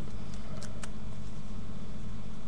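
Steady low hum with three faint small clicks in the first second, from a CE3 clearomizer being pulled out of an e-cig and handled.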